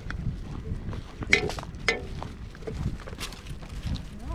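Footsteps on a paved path, with two short, sharp pitched sounds about a second and a half and two seconds in, the loudest things heard.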